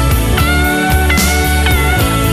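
Instrumental pop-rock karaoke backing track in a break between sung lines. A lead guitar holds long notes that bend upward, over bass and drums.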